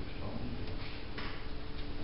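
Steady hum and background noise of a snooker hall, with a faint sharp click a little over a second in.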